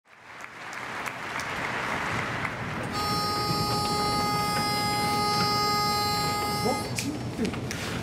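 Crowd murmur in a large hall, then a single steady reed note held for about four seconds: a pitch pipe sounding the starting note for an a cappella barbershop chorus.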